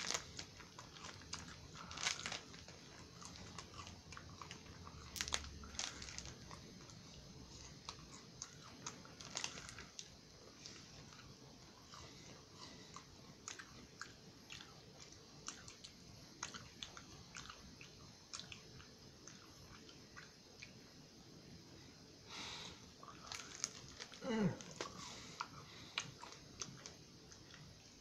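A person chewing a bite of a crispy rice marshmallow bar, with faint, irregular small crunches of the puffed rice throughout.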